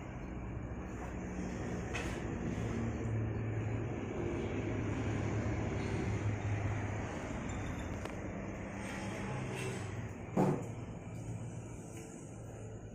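Steady low mechanical rumble with a faint hum, with one sharp knock about ten and a half seconds in.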